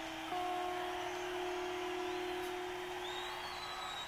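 A single guitar note struck about a third of a second in and held, ringing steadily and slowly fading: the closing note of a live rock song.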